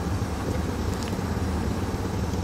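Steady cockpit noise of a Hawker 800XPi business jet on final approach: a constant rush of airflow mixed with the low hum of its Honeywell TFE731 turbofan engines.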